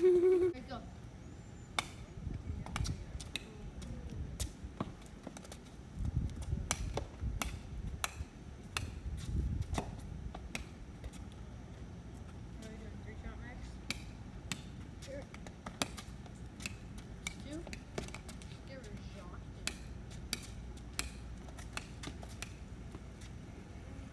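A ball bouncing and being dribbled on a concrete driveway: irregular sharp knocks, some close together, spread through the whole stretch.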